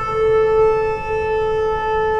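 Conch shell (shankh) blown in one long, steady note.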